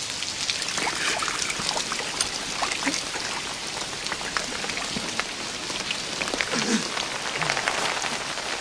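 Steady heavy rain: a constant hiss with many separate drop splashes on stone and rubble.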